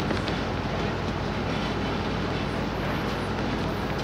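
Steady city street noise, a low traffic hum, with a few faint light clicks just after the start.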